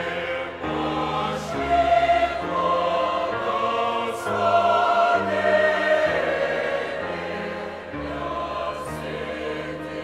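A mixed choir of men's and women's voices singing a hymn in parts, in held chords that change every half second to a second.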